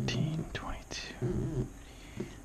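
A person muttering quietly under their breath, in two short stretches, with a few faint scratches of a scratching tool on a scratch-off lottery ticket between them.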